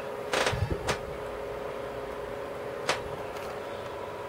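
Faint steady tones from an electronics test bench with a tube amplifier under test, broken by a few clicks and knocks: one about a third of a second in, one near one second, one near three seconds.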